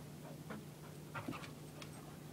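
Excited dog making a few short, faint whimpers and pants, the loudest a little past a second in, while begging for something held up over it.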